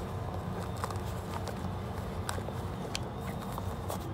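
Hands handling a drysuit and its plastic chest valve and connector, giving a few faint, light clicks and rustles over a steady low hum.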